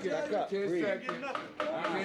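Men's voices from the fight footage's own audio, spectators talking and calling out, quieter than the reactor's voice.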